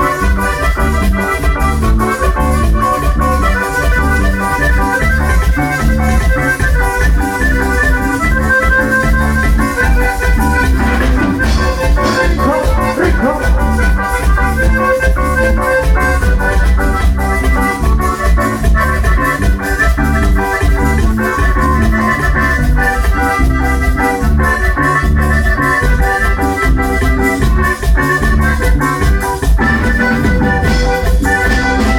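Live grupero band playing an instrumental passage: a sustained, organ-like lead from keyboard and accordion over electric bass, guitars and a steady beat, loud through the stage PA.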